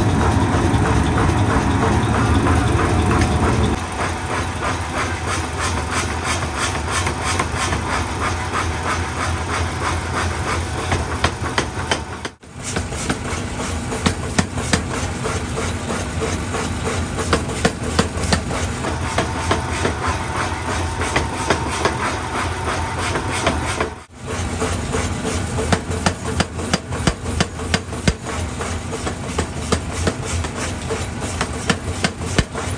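Belt-driven mechanical power hammer running and pounding a red-hot steel billet in quick, repeated blows over the steady noise of its drive. The sound cuts out for an instant twice.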